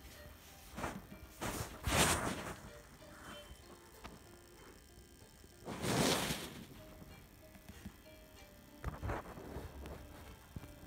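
Handling noise: a few short rubbing and rustling bursts on the microphone as the pressure washer's plastic housing is handled close up, the loudest about six seconds in. Faint short tones of music sit underneath.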